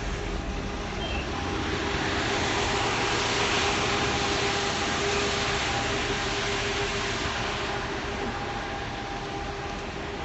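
A vehicle passing by on the street: a rushing noise with a faint steady hum that swells over the first few seconds and fades toward the end.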